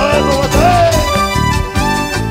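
Live band playing instrumental dance music: a drum kit and bass keep a steady beat under a melodic lead line that slides in pitch.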